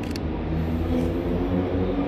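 Steady low rumble of city background noise, with a faint hum running under it and one faint click near the start.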